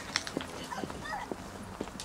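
Footsteps on paving: a series of short, sharp taps about twice a second, with faint voices in the background.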